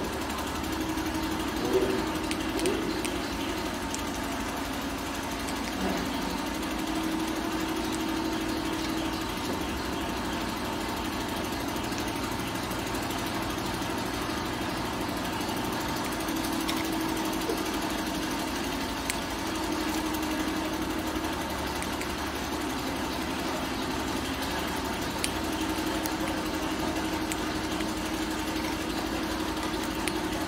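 A steady machine hum, like a motor or engine running, with a wavering tone that comes and goes and a few faint clicks.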